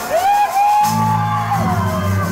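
Live band music: a single voice rises into a long high held cry that falls away near the end, and low bass notes come in under it a little under a second in.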